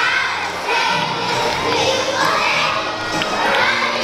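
A large group of young children shouting out together in unison over backing music.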